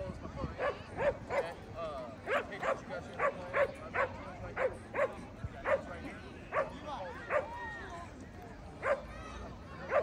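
A dog barking over and over, short sharp barks about two a second that pause briefly near the eight-second mark, with people's voices in the background.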